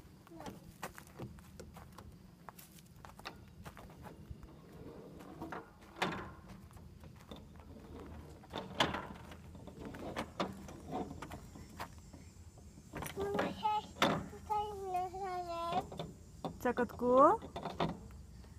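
Scattered knocks and taps on a playground climbing frame as a toddler moves about on it, then a high-pitched, sing-song voice in the last few seconds.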